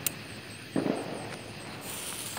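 A sharp click at the start and a short dull knock about a second in. Near the end a steady hiss sets in as a small firework catches and starts to burn.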